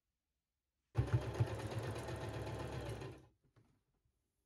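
Domestic electric sewing machine stitching a seam in jersey fabric: one steady run of rapid stitching that starts about a second in and stops abruptly after a little over two seconds.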